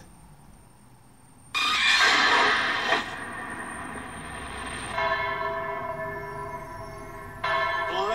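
Movie trailer soundtrack: after a short quiet moment, a sudden loud crash-like hit about a second and a half in that dies away, then church bells ringing in steady sustained tones from about five seconds in, with a fresh louder stroke near the end.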